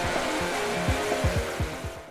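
Intro music sting: a quick run of deep drum hits, each dropping in pitch, over a hiss that fades out toward the end.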